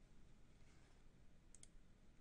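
Near silence with faint room tone, broken about one and a half seconds in by a quick pair of faint computer mouse clicks.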